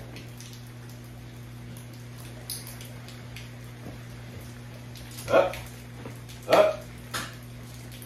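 An XL American bully dog gives two short calls, about five and a half and six and a half seconds in, with a weaker one just after, over a steady low hum.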